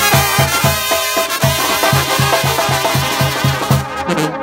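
Mexican banda brass band playing: trumpets and trombones carry the tune over the tuba's bass notes, which pulse about four times a second with drums.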